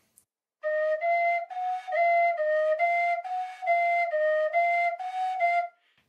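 Carbony carbon-fibre tin whistle in A-flat playing a short run of about a dozen separate notes, stepping up and down among a few neighbouring pitches. The flat seventh is fingered the normal way, with the bottom thumb hole kept closed.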